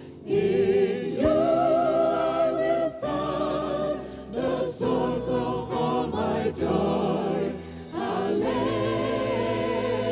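A mixed choir of men's and women's voices singing a worship song through stage microphones, in held, sustained phrases with brief breaks between them.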